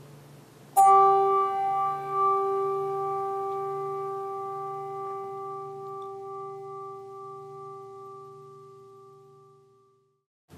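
A bell struck once about a second in, ringing with a clear, steady tone that fades slowly over about nine seconds. It is a memorial toll sounded after a departed member's name is read.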